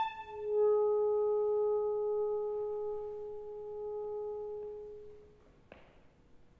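Alto saxophone: a louder note ends at the start, then one soft, pure held note swells in and slowly fades away over about five seconds. A faint click comes near the end.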